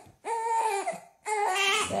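Newborn baby crying in two drawn-out wails with a short breath between, which the father takes for crying from hunger.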